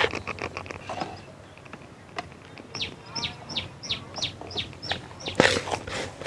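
A bird calling in a run of about eight short, high notes, each falling in pitch, roughly three a second. Beneath it is the soft rustle of hands crumbling dry fishing groundbait in a plastic basin, with a brief louder rustle near the end.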